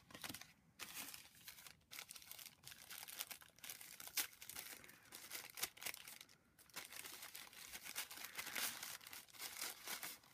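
Paper craft pieces and thin wrapping handled by hand, crinkling and rustling in irregular short bursts, the sharpest crackle about four seconds in.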